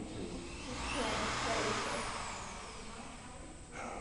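Corded electric drill whirring up to speed, running for about a second, then winding down.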